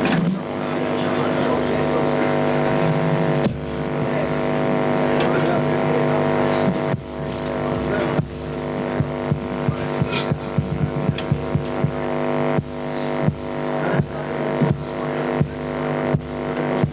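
Post-punk band playing live: a sustained droning chord rings on, and about halfway through drum hits come in and settle into a steady beat of roughly one to two strikes a second.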